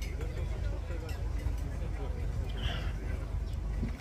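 Faint chatter of background voices over a steady low rumble.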